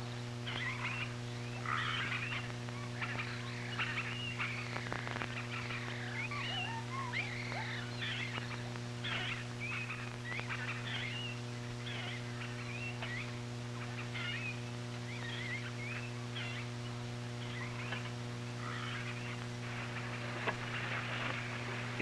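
Jungle ambience: many short chirping animal calls, frog-like, repeating throughout over a steady low electrical hum.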